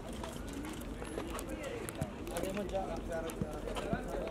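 Background chatter of several voices at low level, with scattered sharp clicks.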